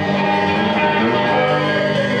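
A rock band playing an instrumental passage, with an electric guitar holding ringing chords, loud and dense, with no singing.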